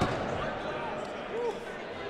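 Gym room noise with distant voices of players, a short knock at the very start, and a single 'woo' shout about a second in.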